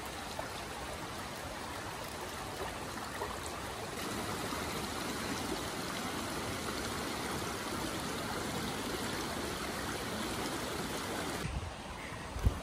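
Shallow rocky mountain creek running over stones and between boulders: a steady rush of water, a little louder from about four seconds in.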